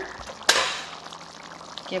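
Stove burner knob switched off with one sharp click about half a second in, followed by a hiss that fades over about a second.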